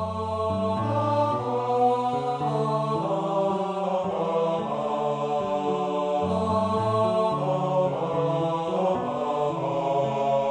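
A choir singing a slow song in Cantonese with piano accompaniment, the voices holding steady notes that change about once a second.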